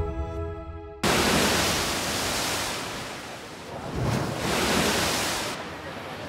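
The last notes of a logo jingle die away over the first second. Then a steady wash of sea surf begins abruptly, swelling and easing like breaking waves.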